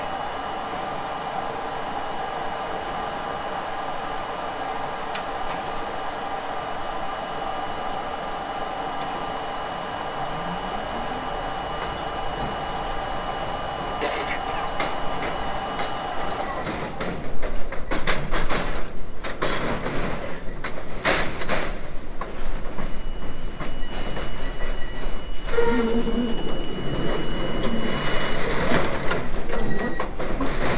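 R32 subway train standing with a steady hum, then pulling away with a short rising motor whine. From about halfway, the wheels clatter loudly over switches and rail joints as it gathers speed on the elevated track.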